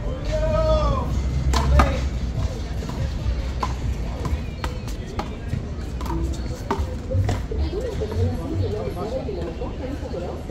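A one-wall handball rally with a big blue rubber ball: sharp slaps at irregular intervals, about a second apart, as the ball is struck by hand and hits the wall. A drawn-out pitched call rises and falls in the first second, and voices follow near the end.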